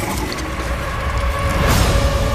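Trailer sound design: a mechanical-sounding noisy texture over a deep low rumble, building into a loud swell just before the end, with music underneath.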